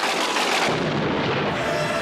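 Buzzer sound effect: a sudden loud boom that rings and dies away, giving way to music with long held notes about a second and a half in.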